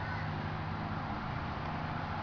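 Steady low hum with background hiss; no distinct event stands out.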